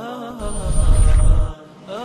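Station ident music: a sustained vocal chant with a deep rumbling swell that builds about half a second in and cuts off suddenly, followed by a brief dip before the chant picks up again.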